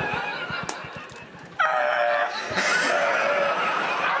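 Two men laughing hysterically. It ebbs briefly, then breaks out again about one and a half seconds in as loud, high-pitched cackling.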